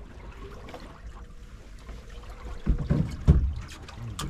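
Water lapping against the hull of a small boat on calm sea, with a few loud, low thumps about three seconds in.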